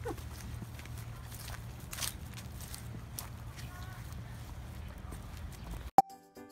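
Footsteps on dry grass and fallen leaves, an irregular run of soft impacts over a steady low hum. There is a brief faint voice a bit past the middle.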